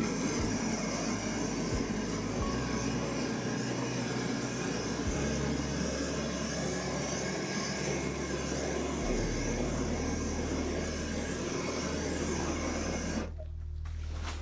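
Handheld gas torch burning with a steady rushing hiss as its flame is passed over wet acrylic pour paint. It shuts off suddenly about a second before the end.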